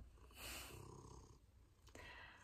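Faint purring of a domestic cat: a quiet, steady low rumble.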